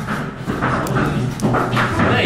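A dog barking in short bursts.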